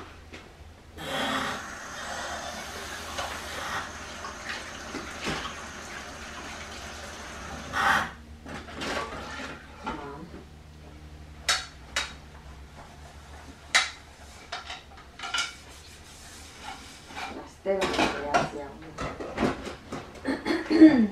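Kitchen tap running into the sink for several seconds. Then dishes and cutlery clink and clatter in a string of separate knocks as they are washed by hand.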